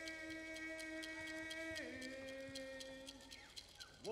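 A young man singing a gift-receiving song unaccompanied, holding long notes. His voice glides down about two seconds in and then fades, with faint regular ticks about four a second behind it.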